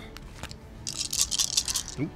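A handful of ten-sided dice rattling in a hand: a quick run of small clicks lasting about a second, starting about a second in.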